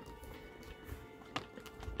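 Faint background music, with a single soft click about one and a half seconds in as the cardboard page of a pop-up book is turned open.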